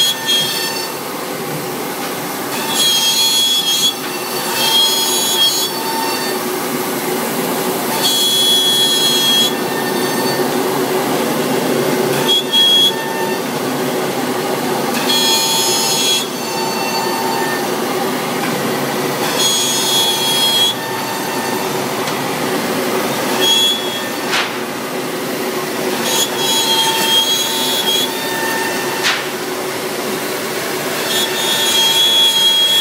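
CNC router spindle running with its bit cutting through sheet stock, a steady machine whine with a high-pitched squeal that comes and goes every few seconds as the cutter moves through the material.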